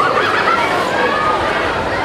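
Crowd murmur: several people talking at once, with short rising and falling voice sounds over a steady background hubbub.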